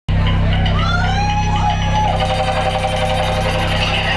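Electronic music cutting in abruptly: a loud, steady, buzzing synthesizer bass drone under a higher tone that slides in pitch and then holds steady.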